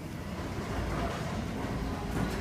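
Steady low rumble of workshop background noise.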